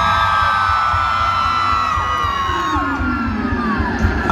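Concert crowd cheering, with several long high-pitched screams held and then trailing off, over the band's low pulsing beat.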